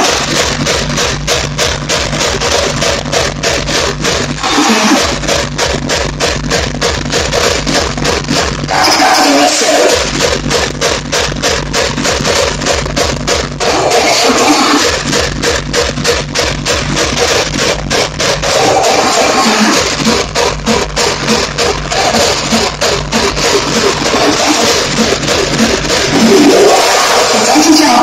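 Hardcore techno played loud through a club sound system: a fast kick drum at about three beats a second, with the kick dropping out briefly about every five seconds.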